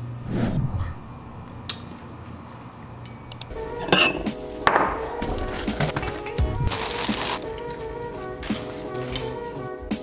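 Background music begins about three and a half seconds in, over kitchen sounds: a ceramic bowl clinking sharply twice, then a short rush of dry cereal poured from its box into the bowl.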